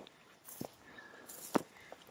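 A few soft footsteps on dry, stony ground, heard as faint crunches about half a second and a second and a half in, with a faint brief high tone about a second in.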